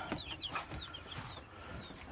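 Young chicks in a brooder peeping: a string of short, high, falling cheeps that thins out in the second half, with a light knock about half a second in.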